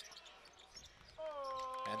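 Faint basketball-arena game sound during live play: a low hum of the crowd with a few soft knocks. About a second in, a held sound of several steady pitches comes up under it.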